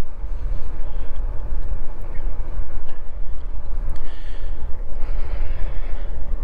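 Wind buffeting the microphone of a camera on an e-bike riding along a paved road: a steady, heavy low rumble with no distinct tones.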